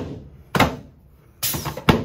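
Sharp thuds of chiropractic hand thrusts on a face-down patient's pelvis, taken up by the adjusting table. One comes about half a second in and a second just before the end.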